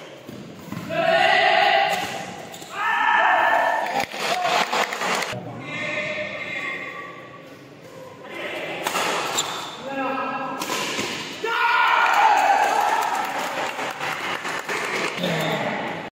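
People shouting in a large indoor sports hall, several long loud calls, with a few sharp clicks of badminton rackets striking the shuttlecock in between.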